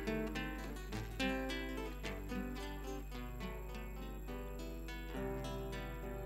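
Acoustic guitar playing a milonga interlude between sung verses: a run of plucked notes and strummed chords.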